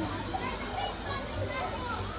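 Faint background voices of children and adults, with no close speaker, over a low steady hum.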